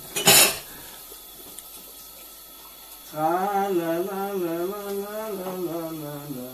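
Kitchen tap run at the sink to fill drinking glasses: a brief clatter of glassware at the start, then water running, and from about three seconds in a steady pitched drone that drops a little near the end, typical of a singing tap or water pipe.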